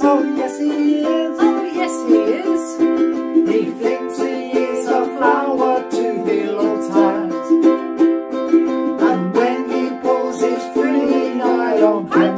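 Ukuleles strummed in a steady rhythm, with a man's and a woman's voices singing along.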